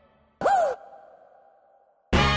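Dubstep track in a sparse stretch: one short, loud stab about half a second in, its pitch swooping up and then falling, over a faint held tone.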